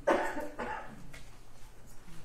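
A person coughing twice in quick succession near the start, the first cough the louder.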